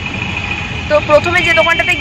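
A woman talking inside a car's cabin, over the steady low rumble of the car and road traffic; a steady high tone runs under the first second before her voice comes in.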